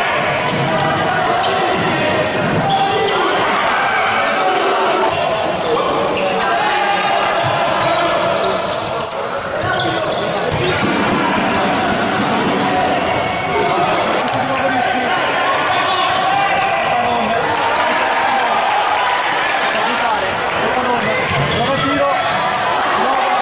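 Live futsal match sound in a sports hall: the ball being kicked and bouncing on the floor in frequent short thuds, with players and spectators calling out throughout.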